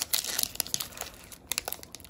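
Foil Pokémon card booster pack wrapper crinkling and tearing as it is opened by hand, busiest in the first half second, then a few sharp crackles about one and a half seconds in.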